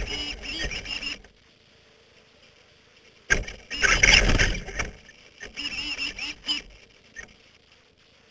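Electric motor and drivetrain of a Traxxas Slash RC short-course truck whining in three short bursts, the pitch wavering as the throttle is blipped.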